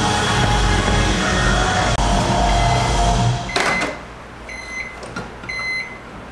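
Countertop microwave oven running with a steady low hum that stops about three and a half seconds in as the door is popped open with a clunk, followed by short electronic beeps twice near the end.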